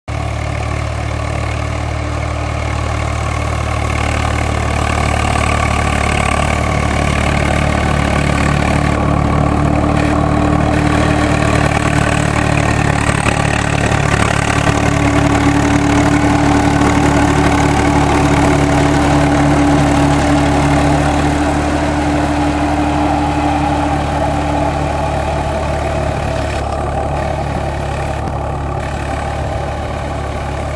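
Tractor diesel engine running steadily under load as it drives a rotary disc harrow through the soil, growing a little louder in the middle and easing off toward the end.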